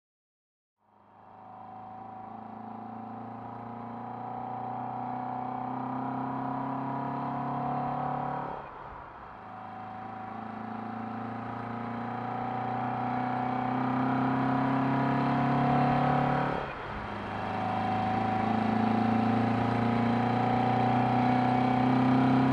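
Car engine pulling up through the gears: a steady note that slowly rises, with two short breaks, about eight and seventeen seconds in, where it shifts up. It fades in after about a second of silence.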